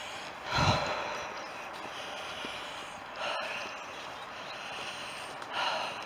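A person's breathing close to the microphone: three audible breaths spaced a couple of seconds apart, over a faint steady hiss, with one small sharp click near the middle.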